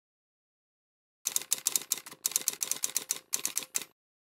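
Camera shutter firing in three quick bursts of rapid clicks, starting about a second in.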